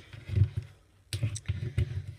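Sheets of paper being handled and set down on a craft table: a soft thump, a short pause, then a few light knocks and rustles.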